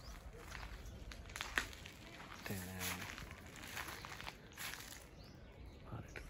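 Footsteps through dry grass and loose stone rubble, irregular steps and rustling, with a short low hum from a voice about two and a half seconds in.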